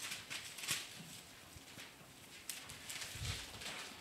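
Faint clicks and taps from a hand working a laptop, with a soft low thump a little after three seconds in.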